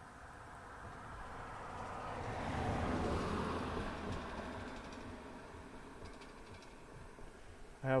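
A passing vehicle, its sound swelling to a peak about three seconds in and then fading away.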